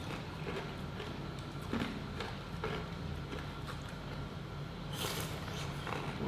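Metal spoon clicking and scraping against a plastic cup of shaved ice while eating, in scattered light ticks, with a brighter scrape about five seconds in. A steady low hum runs underneath.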